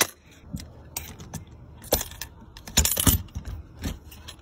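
Clicks and knocks of a small combination key lockbox being handled and shut with a key inside, with a louder cluster of knocks and rattles about three seconds in.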